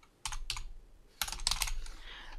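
Computer keyboard typing: a couple of keystrokes shortly after the start, a brief pause, then a quick run of keystrokes in the second half as a word is typed.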